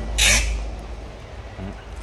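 Hands twisting the stiff 13 mm chuck of an old Hitachi electric drill: one short, loud scraping rasp about a quarter second in, then faint handling noise.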